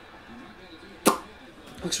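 A single short, sharp hit about a second in, over faint voices.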